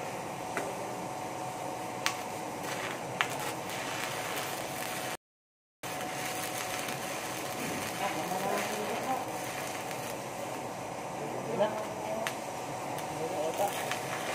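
Stick (shielded metal arc) welding on a steel pipe joint: the arc gives a steady hiss, with a few sharp clicks early on. The sound cuts out to silence for about half a second around five seconds in, then the steady arc noise resumes.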